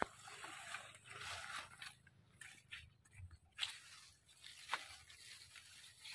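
Faint rustling and brushing of leafy durian seedlings as they are pushed through and handled, with a couple of short soft knocks about halfway through.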